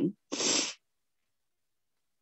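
A woman's short, sharp breath noise between phrases, heard over a video call, followed by dead silence for over a second.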